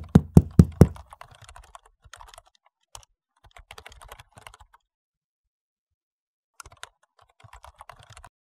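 Rapid knocking on a door, about five loud knocks within the first second, followed by fainter irregular clicking that stops for about two seconds and starts again near the end.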